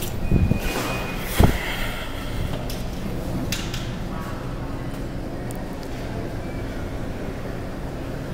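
Steady low hum of the claw machine and the shop around it, with one sharp thump about a second and a half in and a few faint clicks later.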